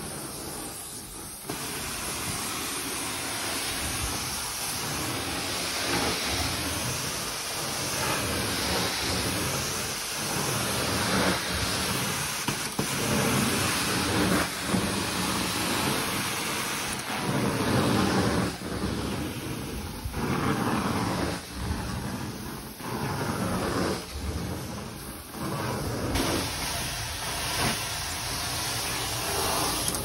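Carpet-cleaning extraction wand spraying and sucking water from the carpet through its vacuum hose: a steady rushing hiss that swells and dips with each stroke.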